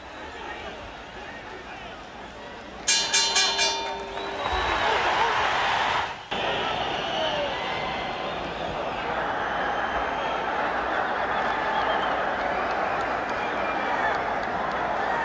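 Boxing ring bell rung in a quick run of strikes for about a second, ending the round, over arena crowd noise. The crowd then swells into a loud, steady ovation.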